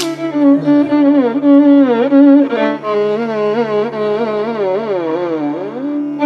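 Carnatic violin playing a slow, unaccompanied-by-drums raga passage, its melody sliding and wavering between notes in continuous ornamented glides over a steady drone.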